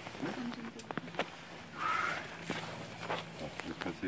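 Faint voices of a group outdoors, with scattered short clicks and knocks from people moving on rock with caving gear. A brief higher call comes about two seconds in.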